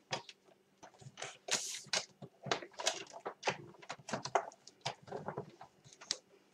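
Paper and plastic cutting plates being handled and slid into place at the entry of a Big Shot die-cutting machine: irregular soft rustles and light clicks.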